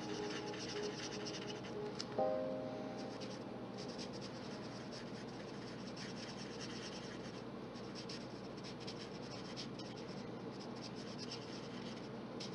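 Marker tip scratching across paper in short, repeated colouring strokes. A soft chord of background music sounds about two seconds in and fades away.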